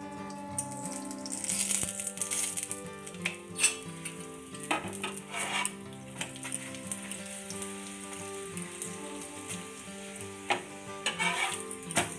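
Oil sizzling under a cauliflower paratha frying on a flat tawa, coming in bursts as the bread is pressed and flipped with a metal spatula, with a few sharp clicks of the spatula against the pan.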